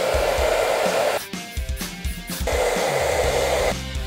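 Handheld hair dryer blowing in two bursts of about a second and a half each, switched off briefly in between.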